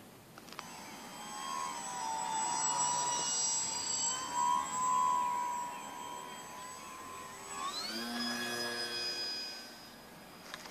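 Electric motor and propeller of a Hacker Venus 3D RC aerobatic plane in flight: a steady high whine that cuts in just after the start and swells and eases as the plane passes. About three-quarters of the way through it jumps sharply up in pitch as the motor speeds up, then fades out near the end.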